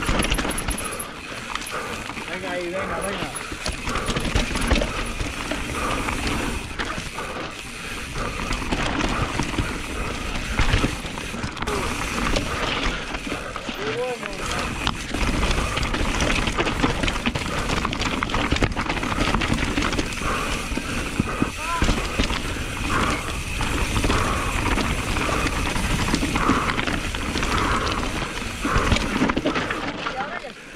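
Radon Swoop 170 enduro mountain bike descending a rough dirt and rock trail at race speed: a continuous rush of tyre noise with many small knocks and rattles from the bike over the rough ground, with wind on the microphone.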